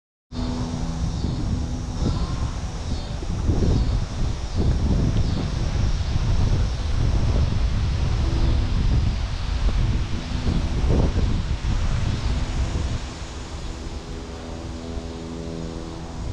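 Gusty wind rumbling on the microphone over a steady engine drone, the rumble easing about three-quarters of the way through while the drone carries on.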